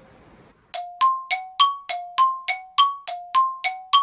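A bright chime sound effect starts under a second in. It strikes rapidly, about three or four times a second, alternating between a lower and a higher note, and each strike rings briefly.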